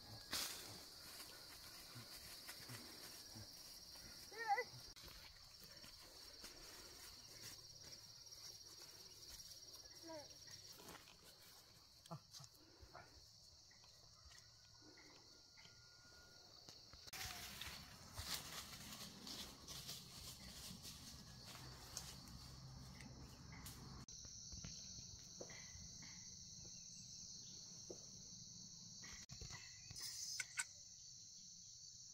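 A faint, steady, high-pitched insect chorus, with a few soft rustles and clicks of handling.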